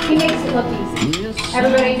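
Plates, glasses and cutlery clinking at dinner tables, with background music playing.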